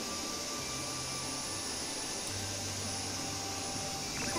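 A steady hiss with soft background music beneath it, its low bass notes changing every second or so.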